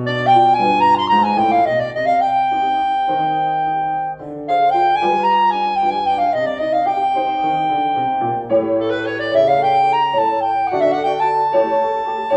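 Clarinet with piano accompaniment playing a Cuban contradanza. The clarinet plays the same phrase three times, a quick run up and back down that ends on a held note, over piano chords.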